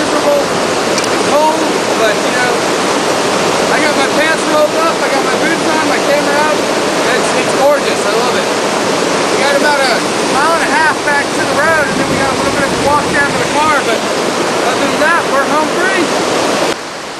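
A rocky mountain stream rushing over boulders in a steady, loud flow, with a man's voice talking over it.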